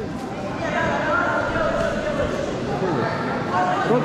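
Indistinct, overlapping voices of people calling out, echoing in a large sports hall.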